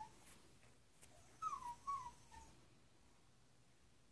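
Puppy whining: a brief high whine at the start, then two short whimpers falling in pitch about one and a half and two seconds in, and a fainter one just after.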